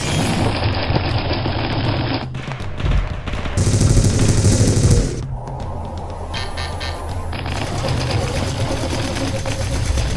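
Animated-film soundtrack: background music mixed with battle sound effects, including rapid gunfire, with a louder rushing burst of noise around the middle.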